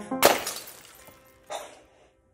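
A loud, sudden crash about a quarter second in, cutting off the background music and dying away over about a second, followed by a shorter, fainter burst of noise near the end.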